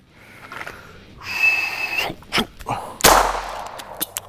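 Electronic shot-timer beep about a second in, then clicks of a magazine being worked into a Beretta 92 pistol during a reload drill, the magazine not seating at first. A loud noisy burst comes near the end.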